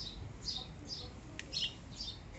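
A small bird chirping in the background: a series of short, high chirps, about two or three a second.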